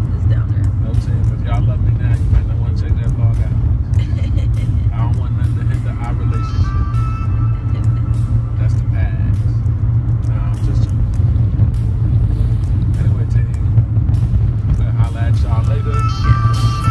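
Steady low rumble of road and engine noise inside a moving car's cabin, with music playing quietly over it.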